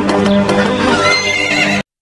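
Studio logo intro sting: loud music mixed with an animal-call sound effect, cutting off abruptly just before the end.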